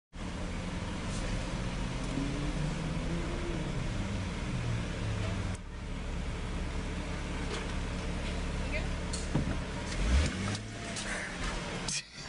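Car engine idling, heard from inside the cabin as a steady low hum, with faint muffled voices and a brief low thump about ten seconds in.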